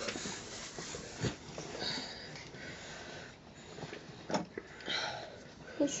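Low-level room sound with faint, brief vocal sounds from a small child and a couple of soft knocks.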